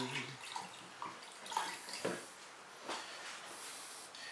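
Faint drips and small wet splashes of liquid glaze running off a freshly glazed raw clay bowl, a handful of soft ticks spread out, with a brief hiss near the end.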